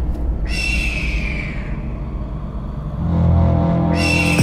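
Film score: a sudden high, ringing sting about half a second in that fades over a couple of seconds, over a low drone that swells near the end, where a second sting begins.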